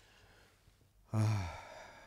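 A man's short voiced sigh, about a second in, after a moment of near silence.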